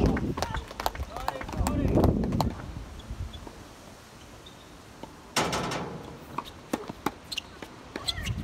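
Tennis ball sounds on an outdoor hard court: scattered sharp knocks of the ball bouncing, then a loud racket strike on the serve about five seconds in, followed by more knocks. A low rumble fills the first couple of seconds.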